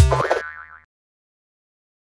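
Final note of a short electronic logo jingle, a bright hit over a low bass note that rings out and fades away within the first second.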